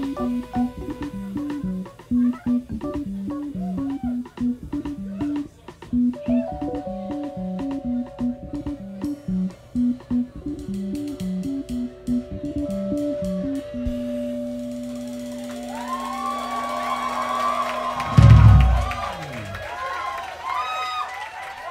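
Live jazz band with saxophone, trumpet, electric bass and drums playing a repeating bass line under held horn notes. About 14 s in the bass settles on one long held note, and about 18 s in the band closes the song on a single loud final hit, with the crowd starting to cheer.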